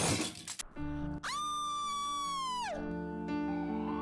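Edited-in comic sound effects with music. A short crash-like burst of noise comes first. Then a held high note sounds over a steady chord, slides down in pitch about halfway through and stops, leaving the chord ringing.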